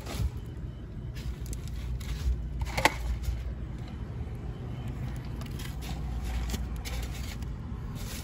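Steady low rumble of a car, with scraping and knocking as the phone and a delivery bag are handled; one sharp knock about three seconds in.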